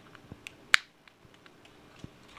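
A monkey handling and biting a small plastic packet: scattered light clicks and crinkles, with one sharp snap a little before the middle.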